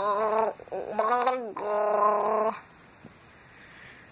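A person's voice making three drawn-out sounds without words: the second slides down in pitch at its end, and the third is held on one steady note for about a second.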